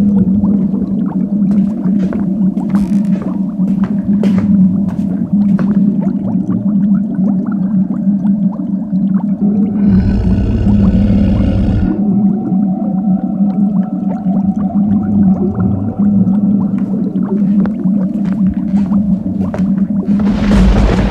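Horror sound-effects soundscape: a steady low drone with scattered clicks and creaks. About halfway through, a brief burst of hiss with a low rumble lasts about two seconds.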